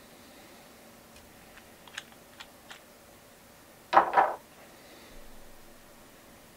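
Small hard clicks from handling a UV lamp or torch at a fly-tying bench: a few light clicks, then a louder double click about four seconds in.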